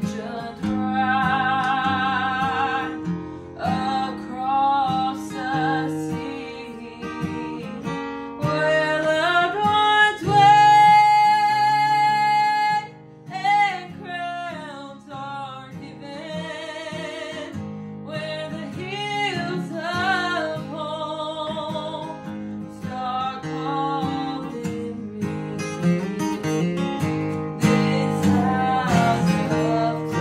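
A woman sings a southern gospel song over a strummed acoustic guitar, her voice wavering in vibrato. She holds one long, loud note about ten seconds in.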